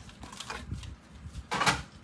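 Hands handling a clear plastic plate and craft supplies on a tabletop: a few soft clicks and knocks, then a short scraping rustle about one and a half seconds in.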